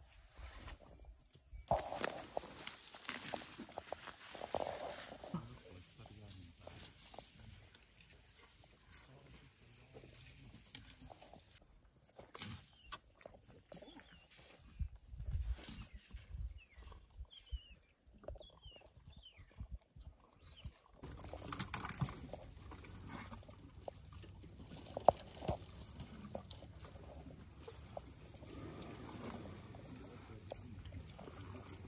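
Young elephant calf drinking milk formula from a large bottle held by a carer: suckling and mouth sounds with scattered knocks and rustles. The background changes abruptly twice.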